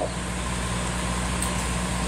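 A steady low mechanical hum with a continuous noisy haze over it, even in level throughout.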